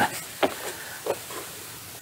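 Low, steady outdoor background hiss, with two small clicks about half a second and a second in.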